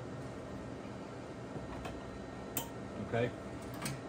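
A few faint clicks and taps of cable connectors being handled and plugged in inside a slot-machine cabinet, the sharpest about two and a half seconds in, over a steady low hum.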